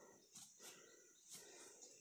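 Near silence: faint outdoor ambience with a couple of brief soft sounds, about half a second and a second and a half in.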